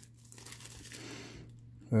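Faint crinkling of thin clear plastic wrapping as it is handled around a boxed disc set.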